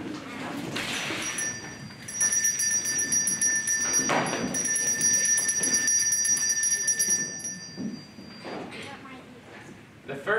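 A small handbell rung over and over, a steady high ringing tone that starts about a second in and stops suddenly after about six seconds.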